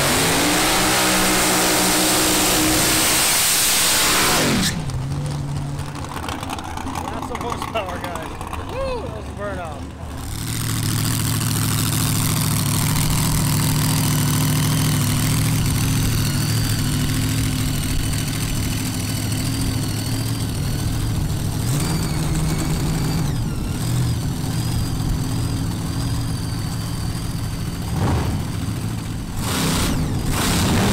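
Front-engine nostalgia dragster's engine idling at the starting line, a steady low drone with a slight waver, for the last two-thirds of the clip. It is preceded by a loud noisy stretch that cuts off about five seconds in, then a quieter stretch with a voice.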